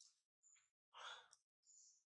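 Faint, short breathy sounds, about one every half second, the loudest about a second in: a nursing baby monkey breathing and suckling.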